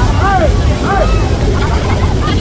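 Children's voices calling out in high, rising-and-falling cries, twice, over a loud, steady low rumble.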